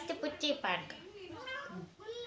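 A domestic cat meowing, a short call with a rising and falling pitch, under soft talking.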